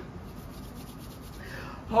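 Faint rubbing and rustling of hands moving over skin and clothing.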